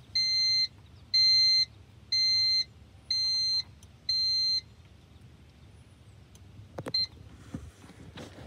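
Magnum RV inverter sounding its fault alarm: five steady high-pitched beeps, about half a second each and one a second, the last two a little quieter. It is flagging error code E01, low battery voltage. A short click follows near the end.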